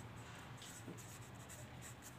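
A pen writing on paper, faintly scratching as a word is written out, over a low steady hum.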